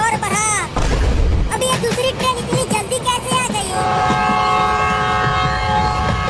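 A train horn sounding one steady chord for about two seconds near the end, over cartoon background music with wavering tones and a low thump in the first half.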